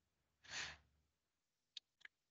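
Near silence with one short, soft breath from a man about half a second in, and a faint click near the end.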